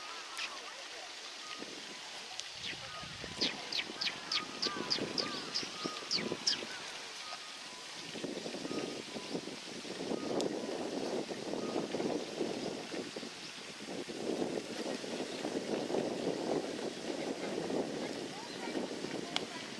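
Eurasian tree sparrows chirping: a quick run of about ten sharp chirps, roughly three a second, a few seconds in. From about halfway a louder rushing noise swells and fades under the birds.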